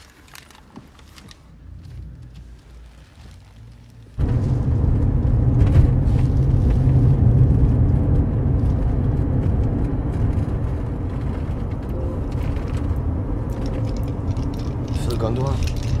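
A loud, steady low rumble with a faint hum, cutting in suddenly about four seconds in after a quiet start and holding from then on.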